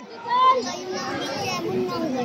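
Overlapping voices of children and onlookers at a rink, with one raised voice calling out about half a second in over general chatter.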